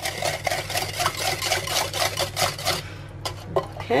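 Wire balloon whisk beating a liquid egg-and-melted-butter mixture in a glass bowl: a fast, even run of clicks as the wires strike the bowl, about five a second. It stops almost three seconds in, followed by a couple of separate taps.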